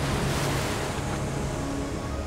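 Storm surf and wind: a steady, dense rush of waves breaking on the shore, swelling slightly about half a second in.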